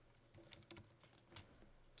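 A few faint, scattered computer keyboard key taps over near silence.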